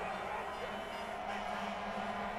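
Steady crowd noise in a football stadium, with a constant low hum underneath.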